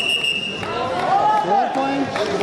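A long, steady whistle blast that stops just before a second in, followed by loud shouting voices.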